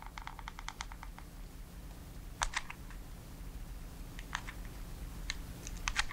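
Hot glue gun's trigger feed clicking as glue is squeezed out: a quick, even run of small clicks in the first second or so, then a few single clicks spaced a second or two apart.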